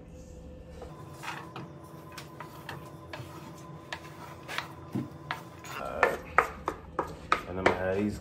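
A spatula scraping chopped bell peppers, onions and mushrooms off a wooden cutting board into a pan, with scattered scrapes and taps on the board and pan that come faster and louder in the last couple of seconds.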